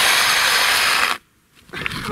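Homemade electric snowmobile braking hard on ice: a loud, steady scraping noise that cuts off suddenly just over a second in as it comes to a stop. The brakes are working well.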